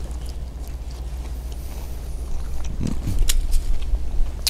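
A person chewing a freshly fried horse mackerel, with a few faint sharp clicks and a brief low murmur about three seconds in, over a steady low rumble.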